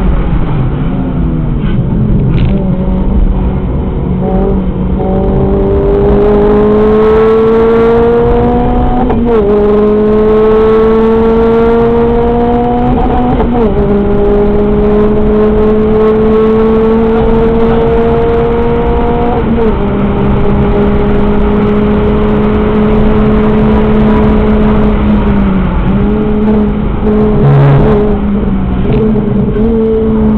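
Renault Clio RS four-cylinder engine heard from inside the cabin at speed. The note drops as the car slows, then climbs under hard acceleration, with sudden falls in pitch at upshifts about nine and thirteen seconds in. It then holds a steady high-speed drone over road and wind noise.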